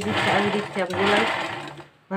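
Black domestic sewing machine running, its needle stitching a seam through blouse fabric, then stopping just before the end.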